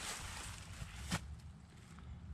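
Faint rustle of footsteps through dry fallen leaves over a low rumble of wind on the microphone, with one sharp click about a second in.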